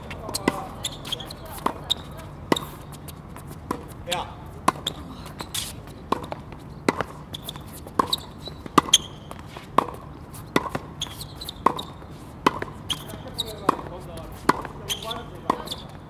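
Tennis balls being struck by rackets and bouncing on a hard court: sharp pops roughly once a second, with faint voices in the background.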